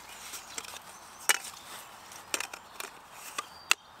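Handling clicks from a camera lens being fitted to a camera body on a tripod: about five sharp plastic and metal clicks and knocks, spread out with pauses between them.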